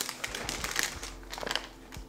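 Plastic grocery packaging crinkling as it is handled, a quick run of crackles in the first second and a few more about one and a half seconds in.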